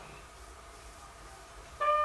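A quiet stretch, then near the end a long horn blast starts suddenly: one steady held note.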